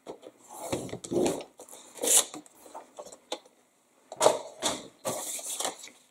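Red cardstock being scored on a paper trimmer and then folded in half by hand: a series of short scrapes, rustles and clicks at irregular intervals.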